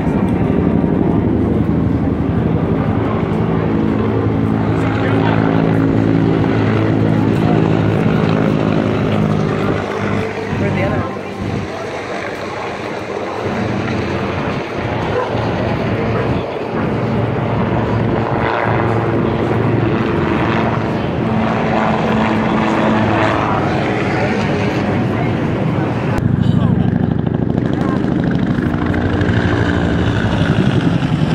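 Military helicopter flying overhead: a steady rotor and engine drone whose pitch shifts as it passes. It fades somewhat midway and comes back louder near the end.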